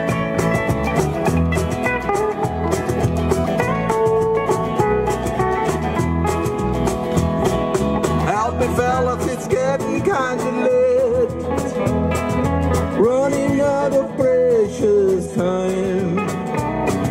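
A live band playing an instrumental break in a country-rock song, with electric guitar, bass and drums. From about halfway in, an electric guitar plays a lead line with bent notes.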